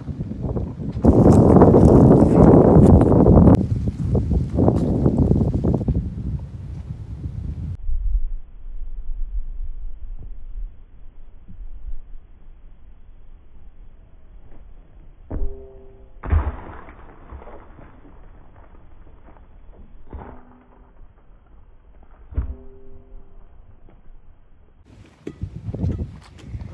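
Wind buffeting the microphone for several seconds. After a quieter stretch come a few dull thumps, the loudest a little past the middle, with short faint pitched sounds among them.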